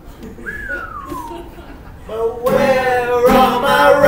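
Live acoustic guitars with wordless vocals. A faint high tone glides up and falls away early on, then about two seconds in a loud held sung note enters over the guitars.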